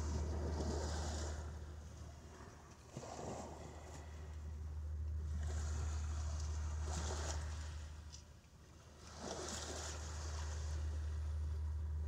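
A steady low hum under a rushing noise that swells and fades about four times, like waves washing on a river shore.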